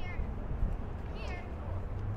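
Two short, high cries, each falling in pitch, one at the very start and a stronger one just past a second in, over a steady low outdoor rumble.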